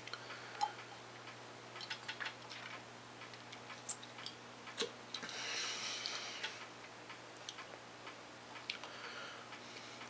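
Quiet tasting sounds after a sip of soda: a scattered run of small, irregular mouth clicks and lip smacks, with a soft breath about five seconds in.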